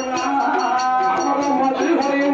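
Male villu pattu singer holding one long sung note into a microphone, over the quick steady beat of the troupe's percussion.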